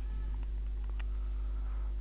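Steady low electrical hum with faint background noise, and two faint clicks about a quarter second and a second in.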